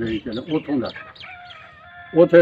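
A rooster crowing in the background, one drawn-out call in the second half, after a man's voice trails off.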